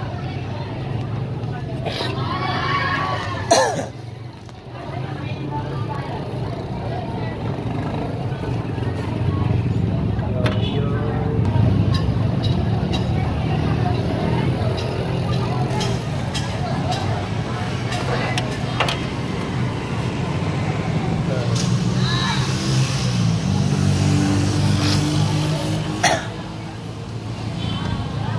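Indistinct talking throughout, with a few sharp clicks and knocks, the loudest about three and a half seconds in.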